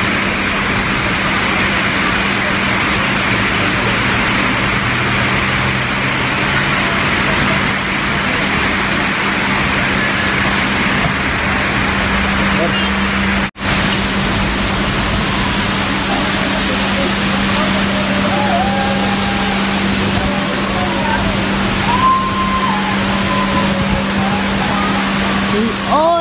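Heavy rain falling steadily, an even loud hiss, with cars passing on the wet road below in the first half. A steady low hum runs underneath, and the sound drops out for an instant about halfway through.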